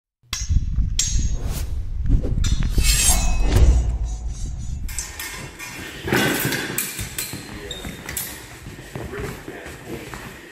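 Music for about the first five seconds. It then changes abruptly to the sounds of rapier-and-dagger sparring in an echoing sports hall: footwork and occasional sharp clinks of steel blades meeting.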